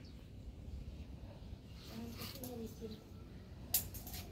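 Faint, distant voices over a low background hum, with one sharp click near the end.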